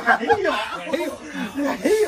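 Men chuckling and laughing in short, broken bursts.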